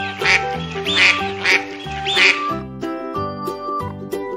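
A duck quacking several times over the first two and a half seconds, over background music.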